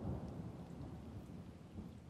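A low, noisy rumble with a faint hiss above it, fading away steadily.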